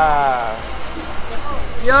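A man's voice trailing off with a falling pitch, then the low rumble of city street traffic until speech resumes near the end.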